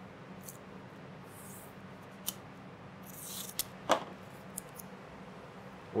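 Masking tape being handled on a decal-covered tabletop: soft rubbing as the tape is pressed down, a short rasp about three seconds in as the tape is torn or pulled, and a single knock just before four seconds as the tape roll is set down, over a low room hum.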